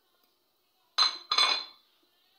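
A ceramic plate clinks twice against a steel cooking pot, about a second in and a third of a second apart, each knock ringing briefly.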